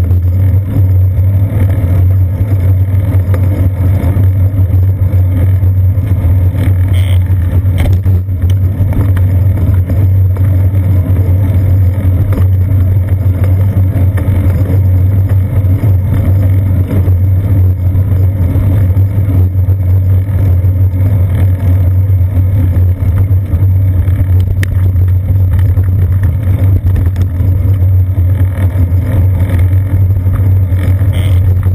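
Steady, loud low rumble from a seat-post-mounted GoPro in its housing on a moving bicycle: wind on the microphone and road vibration coming up through the mount. A couple of brief knocks come about seven and eight seconds in.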